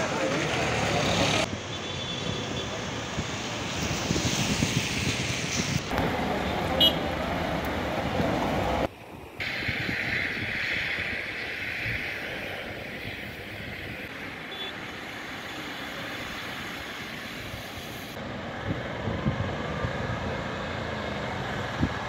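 Outdoor ambience of a wet town street: traffic with passing vehicles and a murmur of voices. It changes abruptly several times, and from about nine seconds in it is a quieter, steady background.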